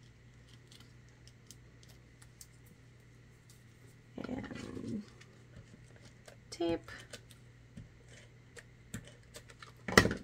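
Quiet handling of cardstock and die-cut paper pieces: faint scattered small clicks and rustles, with one louder rustle lasting under a second about four seconds in.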